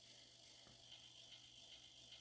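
Faint clicking of the relays in a relay-logic Nixie clock as it counts rapidly through the minutes while setting the time.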